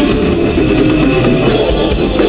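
Live heavy metal band playing loudly, with electric guitars and a drum kit, and a woman singing into a microphone.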